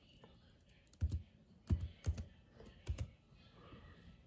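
Computer keyboard keys being typed: a handful of short, irregularly spaced keystrokes as a search word is entered.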